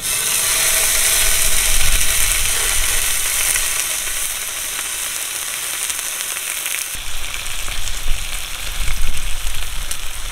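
Pork belly sizzling on the hot nonstick pan of an Urbanside portable gas grill: a dense hiss that starts suddenly as the meat goes down, with sharper pops and crackles in the last few seconds.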